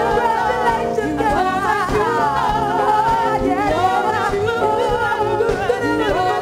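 Two women singing a soul number live, with long wavering vocal runs over a live band of electric bass, drums and guitar.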